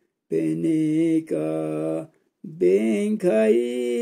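A man's voice singing or chanting in long held notes, each lasting about a second with a slight waver, with short pauses between phrases.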